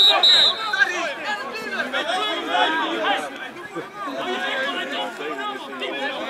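Several people talking at once: overlapping voices.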